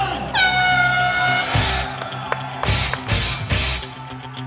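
An air horn sounds one steady blast of about a second, soon after the start, signalling the start of the race. Rock music with a heavy beat plays under and after it.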